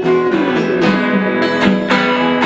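Live band music led by an acoustic guitar strummed in regular chord strokes, with a bass line moving underneath.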